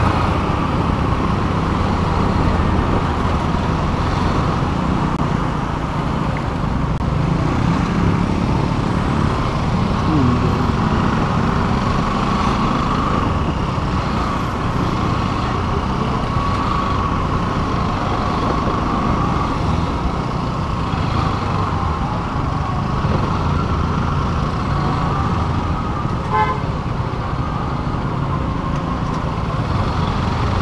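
Motorcycle engine running at low speed in slow, congested traffic, with the noise of surrounding cars and motorbikes. A brief horn beep comes about three-quarters of the way through.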